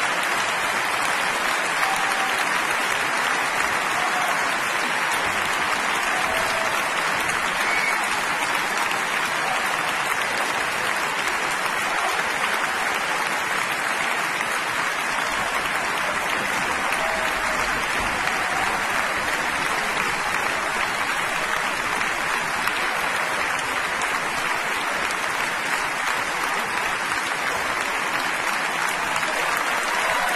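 A large concert audience applauding, a steady dense clapping that holds at the same level throughout.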